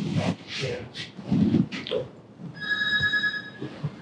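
A person's short breathy vocal sounds over the first two seconds, then a steady electronic ring lasting about a second.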